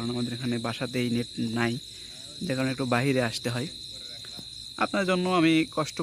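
Crickets chirring in one steady, high, unbroken tone at night, under a man talking.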